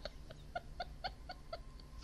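A woman's quiet, stifled laughter, muffled with her face buried in her sleeve: a run of soft, even pulses about four a second.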